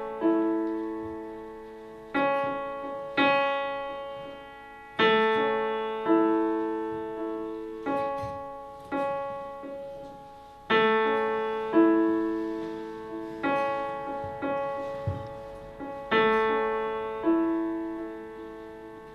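Yamaha keyboard playing a slow piano introduction: a new chord struck every second or two, each ringing and fading before the next, with no voice yet.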